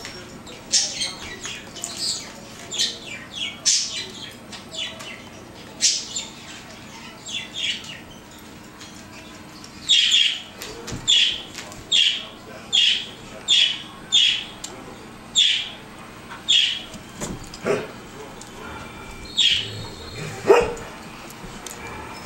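Dogs play-wrestling, one giving a long run of short, high-pitched yelps and squeals, about one or two a second. Near the end come a few lower, fuller cries, the loudest about twenty seconds in.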